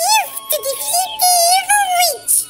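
A very high, pitch-shifted cartoon-style voice talking in quick gliding phrases, too squeaky for the words to come through clearly.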